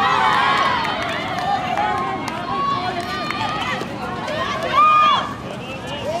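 Spectators and players shouting and calling out over one another during a handball game, with one loud, drawn-out shout a little under five seconds in.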